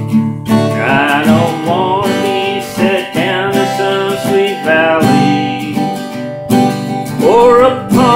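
Acoustic guitar strummed in a slow rhythm, with a man's singing voice coming in about a second in and again near the end.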